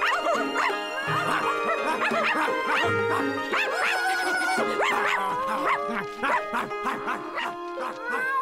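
Cartoon soundtrack music with the high cries of animated kittens over it as they scamper about.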